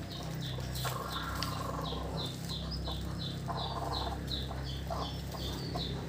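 Newly hatched native chicks peeping steadily under their brooding hen, short falling peeps two or three a second. The hen gives a brief cluck about halfway through as she is handled on the nest.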